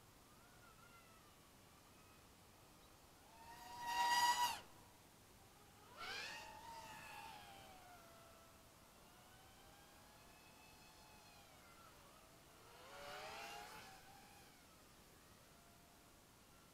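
X210 FPV quadcopter's brushless motors whining faintly, the pitch rising and falling with the throttle. There are three louder surges: a short sharp rise about four seconds in, another about six seconds in, and a longer one near thirteen seconds.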